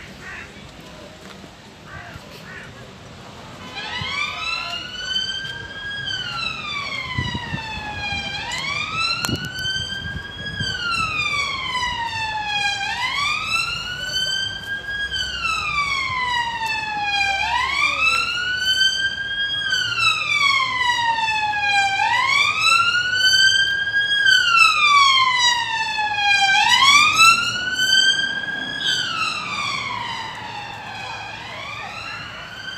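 Emergency vehicle siren in a slow wail, its pitch rising and falling about every three seconds, starting a few seconds in and growing louder toward the end.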